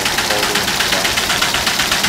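MBO roll-fed folding and finishing line running at just under 500 feet a minute, folding letter-fold forms: a loud, steady machine noise with a fast, even rhythm of clicks.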